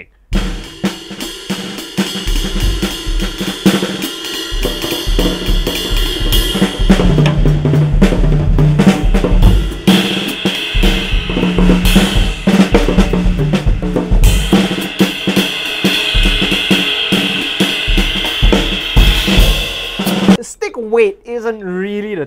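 Drum kit played in a jazz swing style with the butt ends of heavy oak practice sticks: cymbals, snare and bass drum, the cymbal wash swelling in the second half. The playing stops about two seconds before the end.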